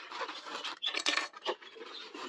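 Small plastic toy parts being pulled out of a styrofoam packing insert and set down on a table: scraping and rustling with a few light plastic clicks.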